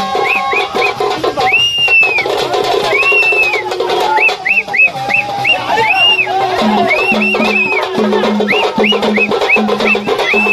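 Tamil folk ritual hand drums played in a quick rhythm, with repeated rising-and-falling whooping tones between the strokes.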